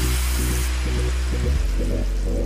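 Background music with a steady bass, over a faint hiss of butter sizzling as it melts on a hot electric griddle pan.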